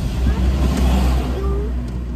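Steady low rumble inside a car cabin from the car's running engine, with faint voices in the background.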